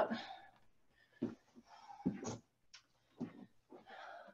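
A woman breathing hard during cardio exercise, with short, faint exhalations about once a second and silence between them.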